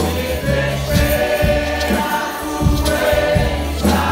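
Live gospel worship music: a woman singing lead over a PA system with the congregation singing along, backed by bass and percussion.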